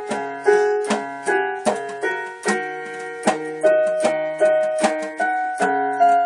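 Keyboard with a piano voice playing chords, struck about two to three times a second, each one ringing and fading before the next.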